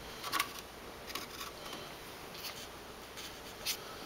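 A few light clicks and rubbing sounds from a small model starship being handled and posed at an angle on its display stand.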